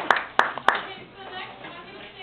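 Applause from a small audience dying away, ending in a few separate hand claps within the first second.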